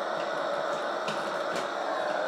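Steady static hiss from the 1998 R.A.D. robot's speaker, still on after its remote has been switched off, with a few light clicks from the robot being handled.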